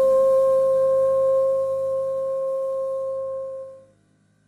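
French horn holding one long final note over a soft low accompaniment chord, fading away just before the end.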